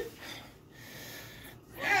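A person breathing hard, faint, in breaths about a second apart, with a short spoken "yeah" at the end.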